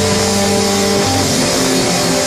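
Live rock band playing: electric guitars holding long notes that change pitch about a second in, over bass guitar and drums with a steady cymbal wash.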